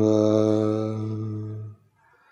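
A Buddhist monk chanting a Sinhala blessing, holding one long steady note that fades and stops near the end.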